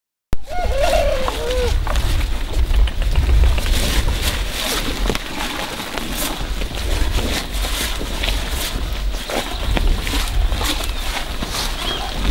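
Zebu cattle tearing and chewing Inga leaves from hand-held branches, the leaves rustling and snapping in a string of short crisp clicks over a steady low rumble.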